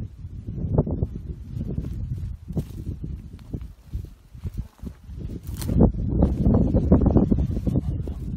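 Wind buffeting the microphone as a low, uneven rumble, with rustling and scuffing in dry sagebrush as the camera moves; louder in the second half.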